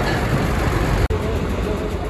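Steady roadside noise with a strong low rumble, typical of traffic, and faint voices in the background. It breaks off briefly about a second in.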